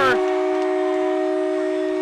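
Ice-arena goal horn sounding a steady, held chord of several tones right after a home goal, with crowd cheering underneath.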